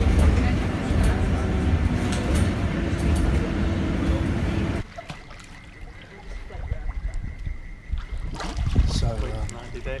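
Loud, steady ride noise with a heavy low rumble inside a moving passenger vehicle, cutting off abruptly about five seconds in. Then comes a much quieter open-air pool with light water sloshing and a few voices near the end.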